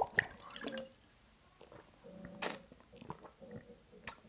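Quiet drinking sounds: a man swallowing from a plastic shaker bottle, with one sharp click about two and a half seconds in.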